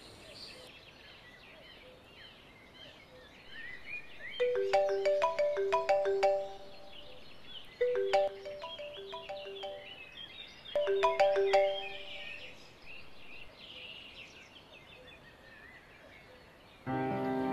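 Mobile phone ringtone ringing for an incoming call: a short melodic phrase of plinked notes, played three times with short gaps between, over birds chirping.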